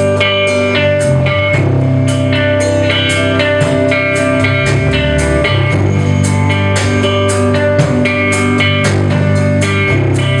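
Live band playing an instrumental passage with no singing: electric guitar over drums with a steady beat and a bass line.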